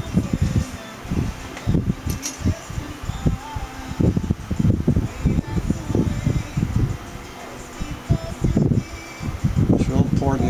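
Wind buffeting the microphone: irregular low rumbling gusts, coming thick and fast.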